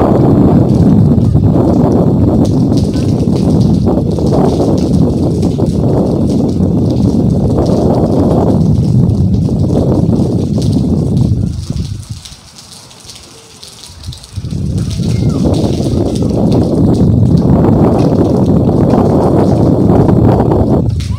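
Strong cyclone wind gusting and buffeting the phone's microphone as a loud, deep rumble, easing to a lull about twelve seconds in and then picking up again.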